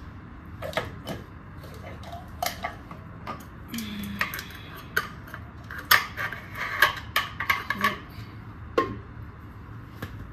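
Scattered clicks and clatters of a blender's plastic lid and jug being handled on a kitchen counter, busiest in the second half. The blender motor is not running.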